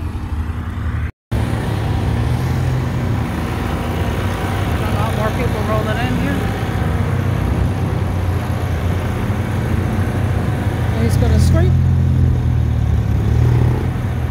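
Car engines running at a car meet: a steady low exhaust rumble that swells louder from about ten seconds in, with people's voices in the background. The sound cuts out completely for a moment about a second in.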